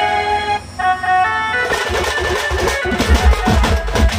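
A held melody line plays, then less than two seconds in a Sambalpuri folk drum ensemble of dhols and smaller stick-beaten drums crashes in with fast, dense beats. Heavy low drum strokes join from about three seconds.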